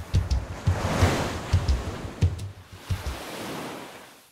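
Show intro jingle: a steady bass-drum beat under a swelling rush of surf-like noise, fading out near the end.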